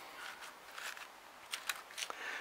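A few faint, light clicks and handling noise from a small two-stroke piston being shifted by hand on its connecting rod's small end, most of them about one and a half seconds in.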